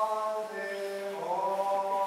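Orthodox liturgical chant sung in long held notes, moving to a new note a little after a second in.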